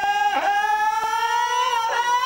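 A man's solo voice singing one long held note of an Amazigh izli (sung verse), rich in overtones, the pitch creeping slightly upward and dipping briefly twice, once just after the start and once near the end.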